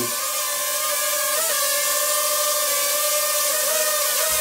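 Ryze Tello mini quadcopter hovering: a steady, high propeller whine made of several tones at once. Its pitch wavers briefly about a second and a half in, and again near the end.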